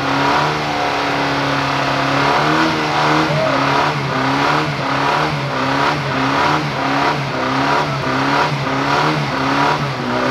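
Car engine held at high revs during a burnout, its pitch wavering up and down about twice a second as the drive wheels spin in a cloud of tyre smoke.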